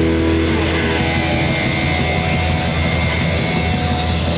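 Live rock band with electric guitars and bass guitar holding long sustained notes over a steady low drone, with no clear drum beat.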